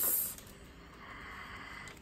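A brief soft hiss in the first half-second, then quiet room tone.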